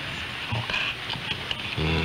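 Radio reception hiss and static from a weak off-air broadcast recorded on cassette tape, with a few faint low murmurs; a voice comes in near the end.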